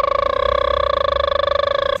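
A man buzzing his pressed lips: one steady, high-pitched buzz with a fast flutter, cutting off suddenly at the end.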